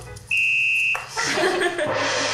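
A single steady electronic beep lasting just over half a second, a game-show failure buzzer marking a failed attempt, followed by laughter.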